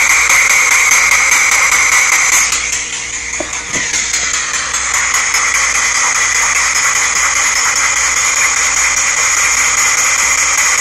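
Ghost box sweeping through radio stations: a steady hiss of static with two steady high whistles through it. The noise dips quieter for about a second, about three seconds in.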